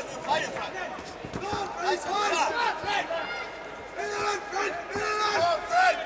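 Untranscribed men's voices shouting and calling out across a boxing arena during an exchange, in short repeated calls, with a few short thuds mixed in.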